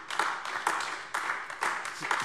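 Applause: many hands clapping unevenly in a dense patter.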